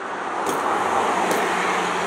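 A passing road vehicle swelling up and easing off, with two sharp hits as punches land on a hanging heavy bag.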